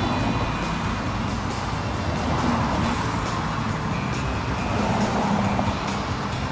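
Cars passing close by on a road: steady tyre and engine noise, with background music playing underneath.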